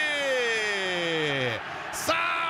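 A man's voice holding one long wordless exclamation whose pitch slides steadily down for about a second and a half and then breaks off, a commentator's drawn-out cry at a near miss off the post.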